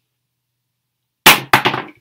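Silence, then a crochet hook dropping and clattering on a hard surface: two loud, sharp hits about a third of a second apart, a little over a second in.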